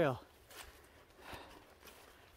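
The tail of a man's spoken word, then faint, scattered rustles of footsteps in grass and undergrowth.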